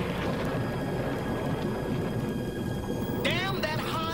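A low rumbling noise with a few faint steady high tones held over it, then a voice with swooping pitch begins about three seconds in.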